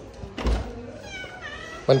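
Wooden louvered door pushed open: a thump about half a second in, then its hinges creak for nearly a second in a squeal that falls slightly in pitch.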